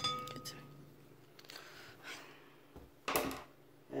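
A glass measuring cup clinks once against the rim of a ceramic mixing bowl, leaving a short ringing tone. After that there is little sound until a brief rustle about three seconds in.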